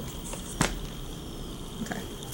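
Hands handling a crumbling wax melt loaf on a paper-covered counter: one sharp tap about half a second in, otherwise faint handling noise.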